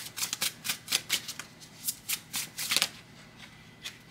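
A deck of tarot cards being shuffled by hand: a quick run of about a dozen crisp card flicks that stops about three seconds in.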